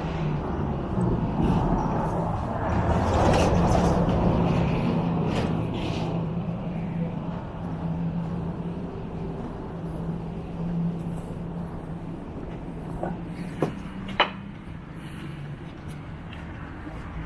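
Street traffic noise over a steady low hum, swelling about three to five seconds in as a car goes by. Two sharp clicks come near the end.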